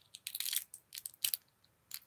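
Fingernails picking and scratching at a plastic safety seal stuck on a lip gloss tube, making a run of short, sharp plastic crackles and clicks in uneven spurts.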